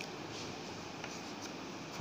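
Chalk scratching faintly on a blackboard as a numeral is written, over quiet room tone.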